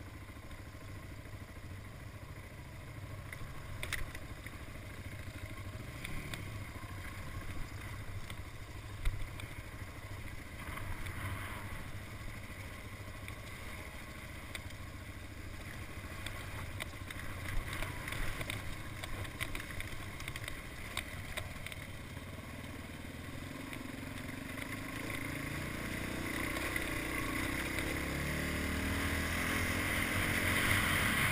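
Dual-sport motorcycle engine running at low speed over a rutted dirt trail, with occasional knocks and rattles from the rough ground. Over the last several seconds the engine and wind noise grow steadily louder as the bike picks up speed.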